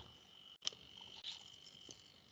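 Faint steady high-pitched tone, the sort a cricket's trill makes, heard under a quiet line during a pause. It drops out briefly just over half a second in and is followed by a short click.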